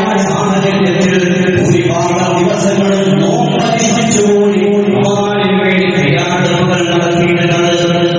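A man's voice chanting a recitation in long, held notes that slide from pitch to pitch, in the melodic style of a preacher's recitation at a Friday sermon.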